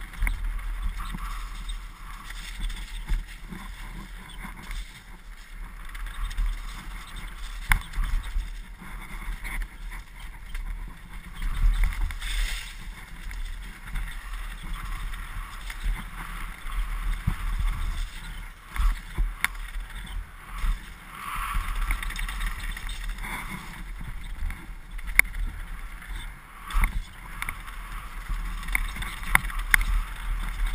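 Downhill mountain bike, a Morewood Makulu, descending fast on a dirt forest trail: a steady rush of wind on the microphone over tyre noise, with frequent sharp knocks and rattles as the bike hits bumps.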